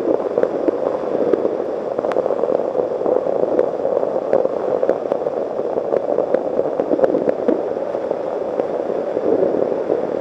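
Steady rush of wind and road noise on a motorcycle-mounted camera's microphone while riding at road speed, with faint scattered ticks through it.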